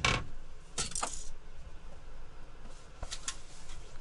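Light knocks and clicks of a 3D-printed plastic hydrofoil wing piece being handled and lifted out of the printer: a sharp knock at the very start, a short cluster of clicks about a second in, and faint ticks near three seconds.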